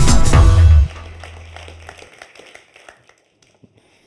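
Electronic intro music with a heavy beat that stops abruptly about a second in; a low tone holds for about another second, then the tail fades to near silence.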